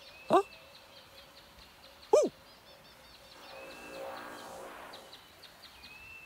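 Two short wordless cartoon vocal sounds, like a questioning 'huh?', about two seconds apart: the first rises in pitch, the second rises and then falls. Underneath is faint jungle ambience of repeated high chirps, with a soft swell in the middle.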